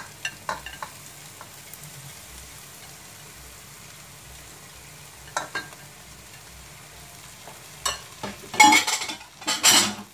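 Shredded chicken being scraped from a glass bowl into a metal pot of sauce that sizzles faintly over a low flame, with a few clicks of the spatula against the bowl and pot. Near the end comes a louder burst of scraping and clatter.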